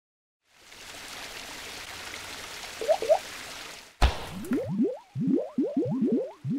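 Sound effects for an animated logo intro: a steady hiss with two short chirps near the three-second mark, then a sharp hit about four seconds in, followed by a quick run of short rising bloops.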